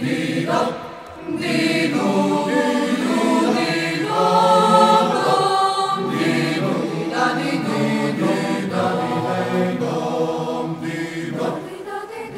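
A choir singing long, held chords as background music in the film's score, with a brief dip about a second in.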